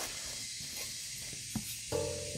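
Loose sheet-metal tractor guard piece being picked up and handled: one light knock about one and a half seconds in, over a steady faint hiss.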